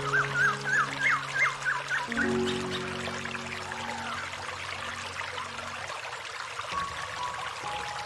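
Soft meditation music of long, held notes over the steady rush of a small stream pouring over rocks. A bird gives a quick run of short rising chirps in the first two seconds.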